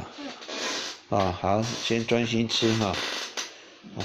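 A person speaking, the words not made out, after a short hissing noise in the first second.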